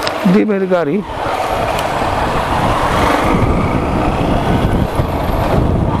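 Steady rushing of wind and road noise on a moving motorcycle's helmet-mounted microphone, with the bike's engine underneath. It builds about a second in, after a few spoken words.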